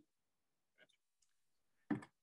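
Near silence, with a faint click a little before the middle and a short, sharp sound just before the end.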